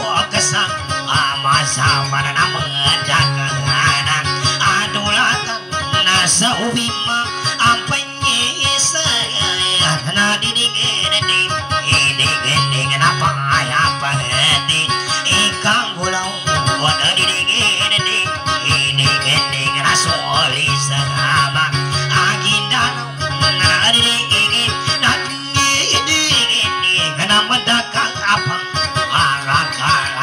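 Acoustic guitar played in quick plucked runs, accompanying Maranao dayunday music.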